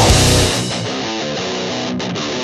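Metalcore band playing, then about half a second in the drums and bass drop out, leaving a thinner, duller-sounding electric guitar part playing alone.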